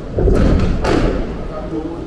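Pedestrian street ambience: a passing person's voice with low thuds and rumble, loudest in the first second and then easing off.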